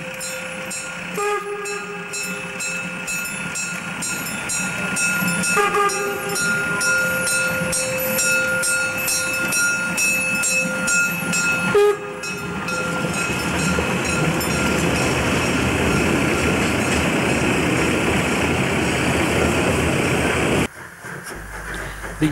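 Narrow-gauge 2-10-2 tank steam locomotive 99 1758-4 (DR class 99.73) running with a train while sounding its whistle in long multi-tone blasts. Each blast starts on a lower note and rises, and they begin about a second in, about six seconds in and about twelve seconds in, over an even beat of exhaust. After that the locomotive passes close by with a loud rush of exhaust and steam, which cuts off abruptly near the end.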